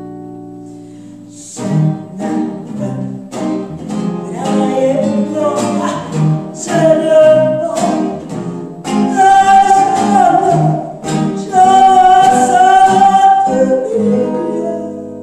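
Gypsy swing song performed live: a woman sings over an acoustic guitar and an archtop electric guitar. A held chord rings out and fades for about the first second and a half, then the guitars come in strumming a rhythm and the voice returns, holding several long notes in the second half.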